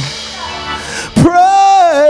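A man singing a wordless worship ad-lib over sustained organ chords. The first second is quieter, with only the organ, then his voice comes in sharply on a loud held note that slides down.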